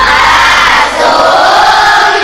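A large group of voices singing together loudly. It cuts in abruptly, replacing instrumental music.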